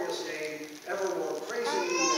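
A pastor's voice chanting the communion liturgy in a sung tone, with long held notes.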